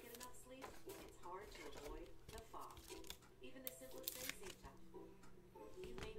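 Faint handling of a stack of trading cards: soft scattered clicks and slides as cards are moved, under a faint wavering voice in the background.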